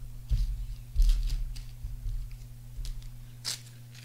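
Hands handling trading cards at a table: two dull bumps in the first second or so, then short crisp rustles and clicks, the sharpest about three and a half seconds in.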